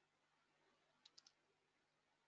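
Near silence, broken about a second in by three faint, quick clicks of a computer mouse.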